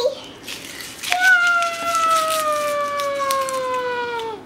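A child's voice holding one long, drawn-out note from about a second in, sliding slowly down in pitch for about three seconds, preceded by a few faint clicks.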